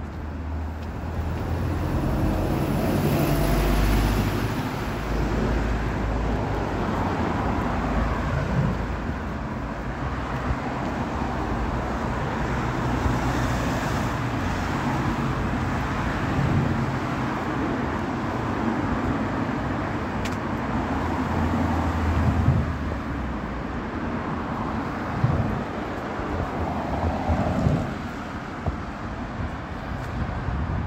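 Traffic on a busy urban main road: cars passing steadily in a continuous rumble, with a louder vehicle swelling past a few seconds in.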